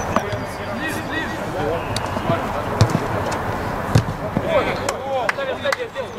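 Distant shouts of football players on an outdoor pitch, with several sharp thuds of the ball being kicked, the loudest about three and four seconds in.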